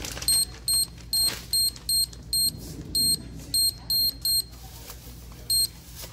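Self-checkout terminal beeping: a quick run of about ten short, high, same-pitched beeps, then one more near the end.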